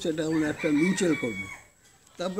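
A rooster crowing, a pitched call with wavering, gliding notes that stops about a second and a half in.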